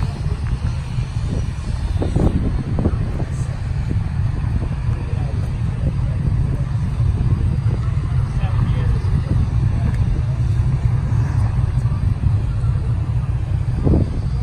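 People talking in the background over a steady low rumble.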